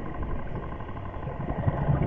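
Steady low underwater rumble with a faint, even mechanical hum running through it, like a distant engine heard through the water.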